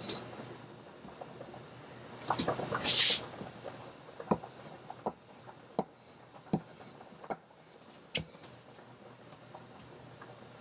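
Kitchen knife cutting cutlassfish fillets into strips on a wooden chopping block, the blade knocking the board with each cut, about once every three-quarters of a second. A brief louder rustle comes about three seconds in.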